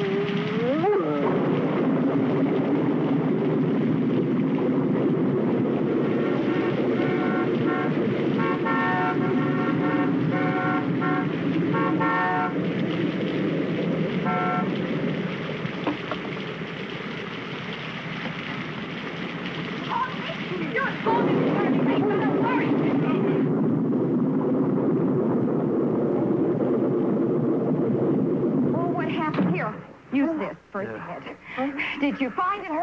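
Car horn honking in a run of repeated blasts, then once more briefly, over a steady rushing noise.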